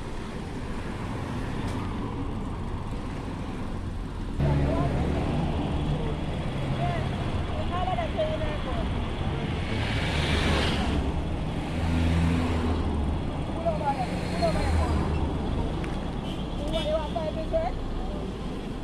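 Car engines running in a slow line of road traffic, a low drone that gets louder about four seconds in as a vehicle comes close, with a brief hiss of passing traffic near the middle.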